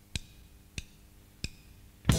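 Drumsticks clicked together three times, evenly and about two-thirds of a second apart: a drummer's count-in for a rock band's song, over a faint steady hum.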